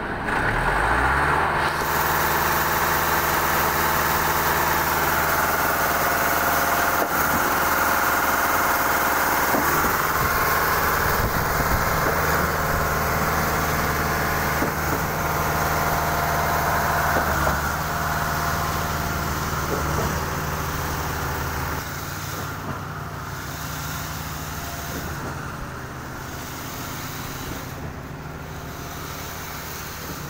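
Trailer-mounted concrete pump and transit mixer running steadily at a constant engine pitch while concrete is fed into the pump's hopper and pumped. A sharp knock comes every few seconds in the middle stretch. The running grows quieter in the last third.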